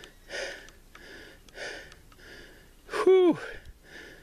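A man breathing hard, short rough breaths roughly once a second, from the exertion of climbing a steep hill under a heavy pack. About three seconds in, one breath comes out as a louder voiced groan that falls in pitch.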